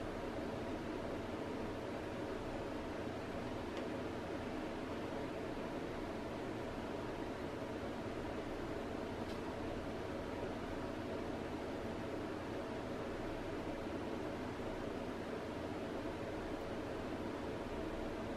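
Steady, even background hiss with a faint steady tone under it and no distinct events.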